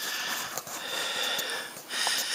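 A cat sniffing hard at a catnip-rubbed bedsheet close to the microphone, a long breathy hiss that breaks briefly about half a second in and again near the end.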